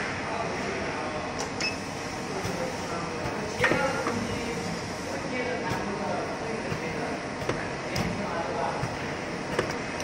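Voices talking in the background over a steady hum, with a few short sharp clicks, one about a second and a half in, one near four seconds and one near eight seconds.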